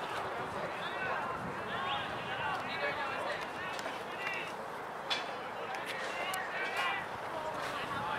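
Indistinct voices: chatter and calls from people around the ground, too faint or distant for clear words, over steady outdoor background noise. A single sharp tap or click about five seconds in.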